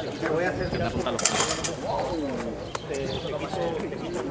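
Several people talking at once without clear words, with a brief hissing scrape just over a second in.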